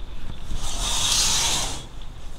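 A fabric privacy curtain being drawn aside, one swishing rub of cloth sliding that lasts about a second and a half.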